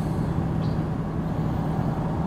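Steady low hum of a truck's running engine, heard from inside the cab, with a faint steady tone under it.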